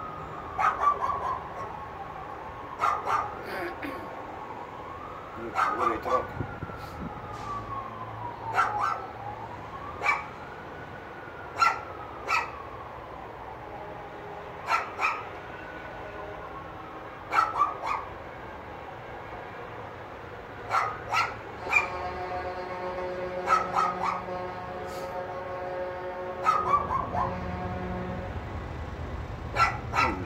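Emergency-vehicle siren wailing, rising and falling every few seconds, with short sharp calls in ones and pairs over it. In the second half the wail gives way to a long, steady multi-tone horn blast from a truck, with a low engine rumble near the end as a dump truck passes.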